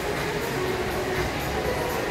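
Steady background din of a large indoor public space, heard while the phone is carried along.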